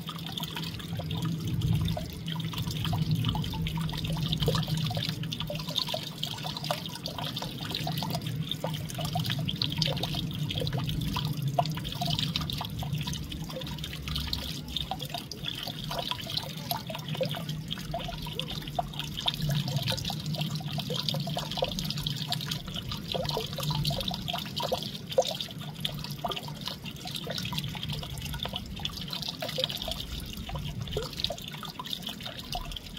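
Steady trickling of running water, with a low steady hum underneath.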